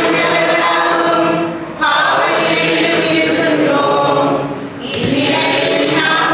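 A group of voices singing a hymn together in chorus, in long held phrases with two short breaks, about two and five seconds in.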